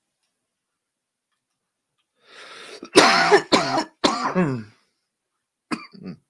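A man coughing three times in quick succession about three seconds in, after a short intake of breath: a lingering cough he is tired of.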